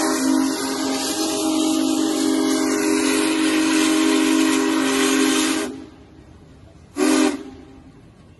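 Steam whistle of Union Pacific Big Boy #4014, sounding several notes at once over a hiss of steam: one long blast that cuts off about six seconds in, then a short toot about a second later.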